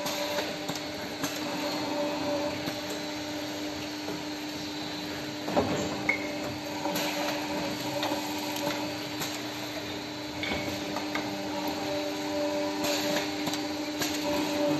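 Vertical injection moulding machine for plastic drawstring tips running: a steady machine hum with scattered clicks and knocks from its moving parts. The two sharpest knocks come about five seconds in, half a second apart.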